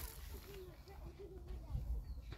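Quiet outdoor background: a low rumble, with a faint wavering call in the first half.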